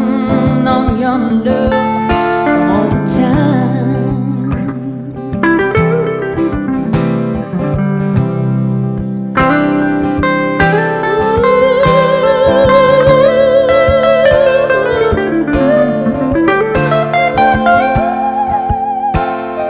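Instrumental break: an electric guitar plays a lead melody with bends, slides and vibrato over strummed acoustic guitar chords.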